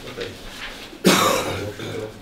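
A man coughs once, loudly and suddenly, about a second in.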